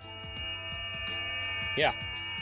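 Icom IC-705 receiver's speaker playing FT8 digital-mode signals on 14.074 MHz USB-D: several steady overlapping tones at different pitches, louder from the start.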